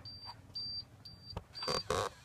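Ford F-150 dashboard warning chime: a short high beep repeating about twice a second. A couple of knocks and a louder rustle come near the end.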